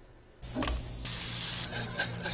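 A wire whisk beating a liquid in a stainless steel mixing bowl: a steady, busy scraping that starts about half a second in.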